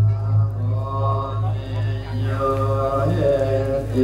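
Buddhist chanting in Pali, a slow chant of long held notes that step from pitch to pitch, with a steady low hum beneath it.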